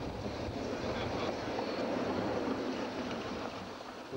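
1950s Blackpool coronation tram running along the track, a steady rushing noise of wheels and running gear that swells in the middle and eases near the end.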